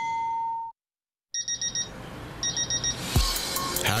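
A held electronic chime tone ends, followed by a brief silence. A digital alarm clock then beeps in two quick bursts of about four beeps each. Background music with low beats comes in near the end.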